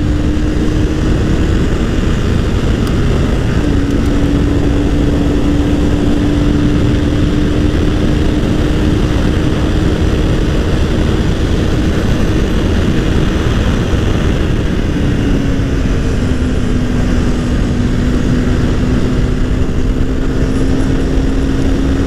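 Honda CBR250R's single-cylinder engine running at a steady cruise on the road, under loud, steady wind rush on the microphone. The engine note holds one pitch, drops out briefly twice, and settles slightly lower about two-thirds of the way in.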